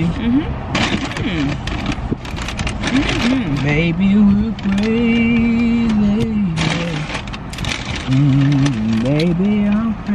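A person humming "mmm" with closed lips while eating, in long held tones that move between a few pitches, with a second stretch of humming near the end. Short crackles of handled paper food bags and packaging, and eating noises, run alongside.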